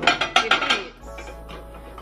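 Square ceramic plate clinking and scraping on a microwave's glass turntable as it is slid in: a quick run of clinks in the first second. Background music plays throughout.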